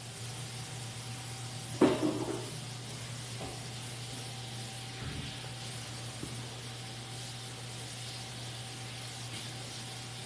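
A single knock with a short ring about two seconds in, then a few faint clicks, over a steady low hum in a kitchen.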